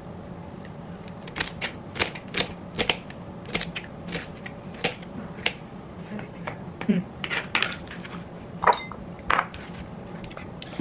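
Knife slicing celery on a cutting board: an uneven run of crisp chopping taps, about two a second, with a couple of louder knocks near the end.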